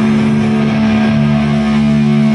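Distorted electric guitar and bass holding one low chord through the amplifiers, steady and unbroken, with no drums.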